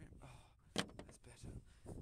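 A single sharp knock about a second in, among quieter irregular handling noises.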